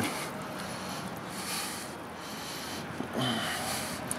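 Thick wet slurry pouring in a slow stream from a metal container into a plastic bucket and piling up, with soft wet slopping sounds.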